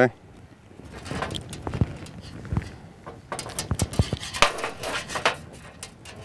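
Crimping pliers clicking as an aluminium crimp sleeve is pressed onto monofilament fishing line, with a run of sharp clicks and knocks in the second half.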